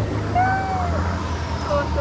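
A four-wheel drive's engine running with a steady low hum as it pushes through a deep, muddy creek crossing. A person's drawn-out 'oh' rises and falls over it in the first second.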